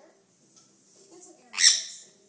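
A pet parrot gives one short, loud, shrill squawk about one and a half seconds in.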